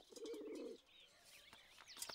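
Faint cooing of pigeons, one brief coo near the start, with scattered high chirps of small birds.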